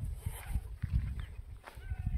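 Wind buffeting the microphone in uneven gusts, with a few faint, short high calls above it.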